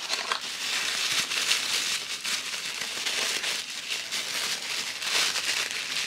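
Tissue paper crinkling and rustling continuously as hands unwrap a small toy from it, a little louder about a second and a half in and again near the end.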